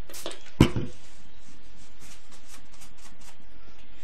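A single sharp knock on a wooden board about half a second in, followed by faint scattered rustling and small taps of handling.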